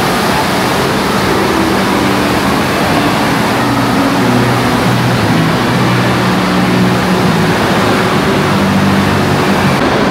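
Loud, steady din of a big indoor water park: rushing water and the noise of a crowd of swimmers echoing through the hall. Low droning tones shift in pitch underneath it.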